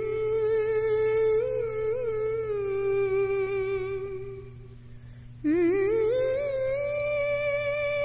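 Female singer humming wordlessly in two long held notes. Each note opens with a wavering pitch and then holds steady, the second pitched higher than the first, over a steady low drone.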